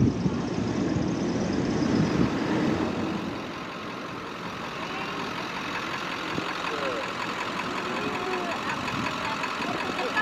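Ford F-150 pickup's engine idling close by amid street traffic noise, which is heavier in the first few seconds and then settles to a steady idle with faint voices in the background.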